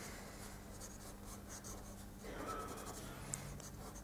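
Faint scratching of sketching strokes as a hand is drawn, quick short strokes on the drawing surface.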